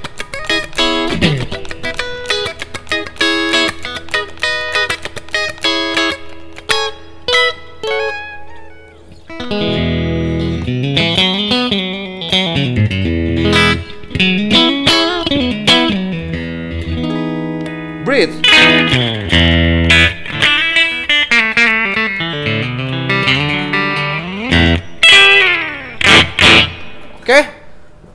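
Tokai AST-52 Goldstar Sound Stratocaster-style electric guitar played on its bridge pickup with a clean tone through a Yamaha THR10 amp: picked melodic lines and chords. The playing gets fuller and busier from about ten seconds in, with string bends near the end.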